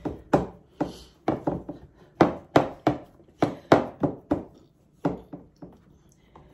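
Repeated dull thumps, about two or three a second, as hands press pie-crust dough down into a metal baking tray on a counter, dying away in the last second.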